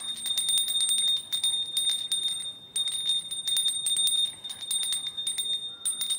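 Small brass puja hand bell rung rapidly and continuously in a single high ringing tone, with a brief break about two and a half seconds in and another near the end.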